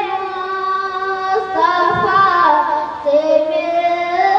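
A boy singing a naat unaccompanied into a microphone, holding long, ornamented notes; the melody steps down about three seconds in and then climbs again.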